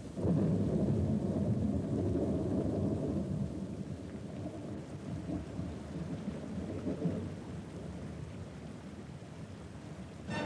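Thunder sound effect on a stage show's soundtrack: a deep rumble that breaks in suddenly and slowly dies away over several seconds, with no music under it.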